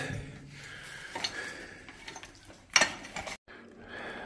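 A rock hammer striking quartz vein rock once, a sharp knock a little under three seconds in, after some faint clicks of rock being handled.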